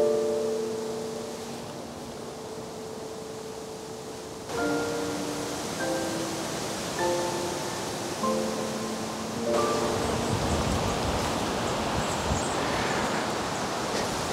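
Gentle background music of slow, sustained keyboard notes over the steady rush of wind in the trees. The wind grows louder about two-thirds of the way through.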